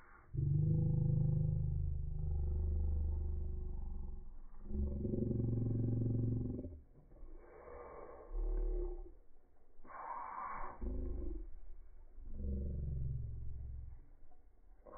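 Slowed-down soundtrack of slow-motion footage: deep, drawn-out rumbling swells, the longest about four seconds and several shorter ones after, with no high sound at all.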